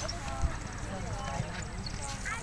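A horse galloping on grass, its hoofbeats coming through as low, irregular thuds, with one sharper thump about half a second in, under people talking nearby.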